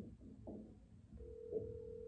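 Telephone ringback tone from a smartphone's speaker: one steady beep about a second long starts a little past halfway, the call still ringing unanswered.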